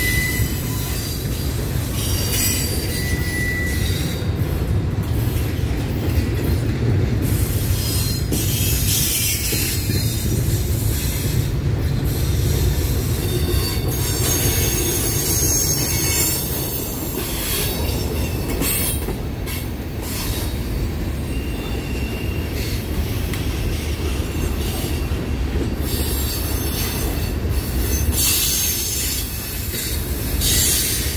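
Freight train cars rolling past close by: a steady rumble of steel wheels on rail with frequent clanks and rattles. Short, thin wheel squeals come and go a few times.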